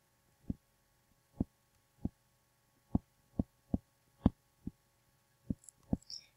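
Stylus tapping on a tablet screen while handwriting: about ten soft, short taps at uneven intervals as each stroke of the letters touches down.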